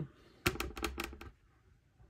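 Trading cards being handled in the fingers: a quick run of about eight sharp clicks and ticks, starting about half a second in and lasting under a second.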